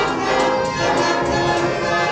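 Youth concert band playing a fanfare: sustained brass and woodwind chords over quick, repeated percussion strokes.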